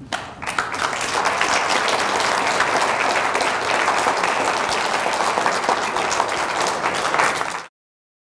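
Audience applauding, swelling within the first second, holding steady, then cut off abruptly near the end.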